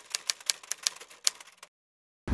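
Typewriter keystroke sound effect: a quick, irregular run of key clicks that stops shortly before the end.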